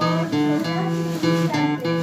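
Acoustic guitar picking single notes one after another on the D (fourth) string, moving between the second fret and the open string, each note left ringing.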